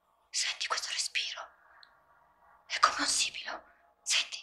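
Whispered speech in two short phrases, breathy and hissing, over a faint steady drone.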